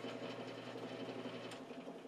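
Band saw running free between cuts: a faint, steady motor hum, with a light click about one and a half seconds in.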